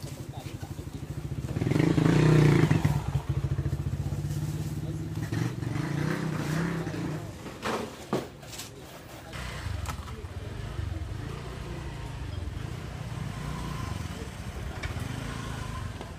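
A motorcycle engine running close by, loudest about two seconds in and then dropping back to a low hum.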